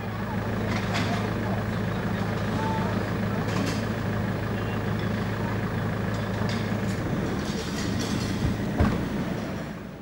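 Steady low hum of an idling engine under outdoor background noise, with faint voices and a few light clicks, and a single sharp knock near the end.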